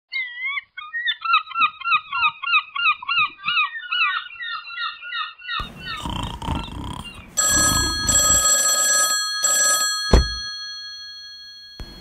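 Birds calling in a rapid, repeated chattering run for about five seconds, followed by a man snoring. Over the snoring a rotary telephone's bell rings in three short bursts, cut off by a sharp knock as the receiver is picked up.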